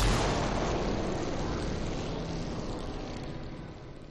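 A TV channel's closing ident sound effect: a broad rushing swell with a low rumble, strongest at the start and fading steadily away.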